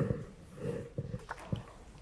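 Small sounds from a congregation in a reverberant church: two short soft sounds near the start, then a few light knocks, like people moving in wooden pews.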